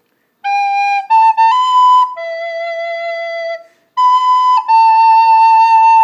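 White plastic soprano recorder playing a slow six-note phrase: G, A, B, then a longer lower E, back up to B, and a long held A.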